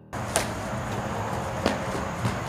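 Outdoor background noise, a steady hiss, broken by two sharp taps a little over a second apart.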